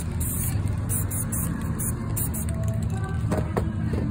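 Aerosol spray paint can hissing in short bursts, strongest in the first half second, over a low steady rumble.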